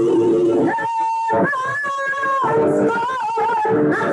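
A woman singing gospel praise, holding one long high note for nearly two seconds, then a shorter wavering note.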